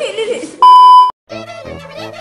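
A loud electronic bleep, one steady high tone lasting about half a second, cuts in over voices just over half a second in and stops abruptly. Background music with a steady beat starts right after.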